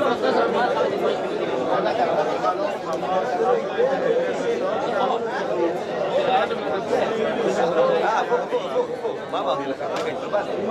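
The din of a beit midrash (yeshiva study hall): many men studying Torah aloud at once, their voices overlapping into a steady babble in which no single speaker stands out.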